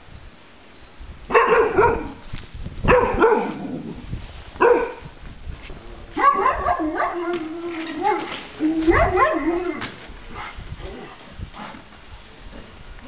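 Caucasian Shepherd dogs barking: three single barks about a second and a half apart, then a longer run of barks mixed with a drawn-out whine from about six to ten seconds in.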